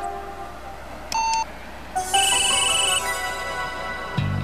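Computer beeps over sustained background music: one short beep about a second in, then a louder, higher electronic tone lasting about a second, sounding as a hacker's message pops up on the screen.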